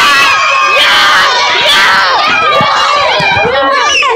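A group of children shouting and cheering all at once, loud and without a break, cheering on balloon rockets racing along their strings.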